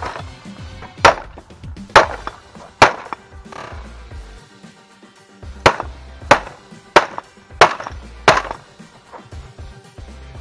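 Hard blows smashing a white plastic iMac's casing, first with a hammer and then with boot stomps: four sharp cracking impacts about a second apart, a pause of a couple of seconds, then five more in quick succession. Background music plays underneath.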